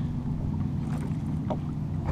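Steady low hum of a boat motor running, with a single light knock about one and a half seconds in.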